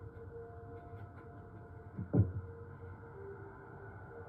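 A dog gives one short, low 'rah' about two seconds in, over a faint steady hum.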